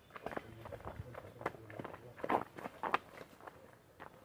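Footsteps of several people walking on a stone-paved path: an uneven run of steps, with two louder ones past the middle.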